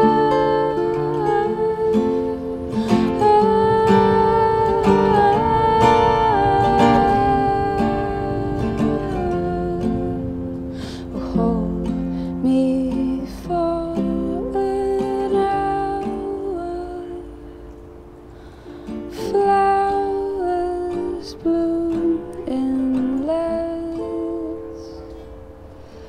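Acoustic guitar playing an instrumental passage of a slow song, with ringing held notes. It dies down low past the middle, comes back, and fades again near the end.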